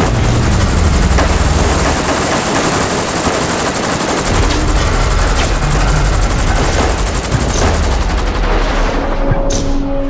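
Sustained automatic gunfire from several guns firing at once, a dense unbroken volley, with music underneath.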